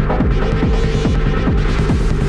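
Hard techno music: a steady kick drum, a little over two beats a second, over a droning bass.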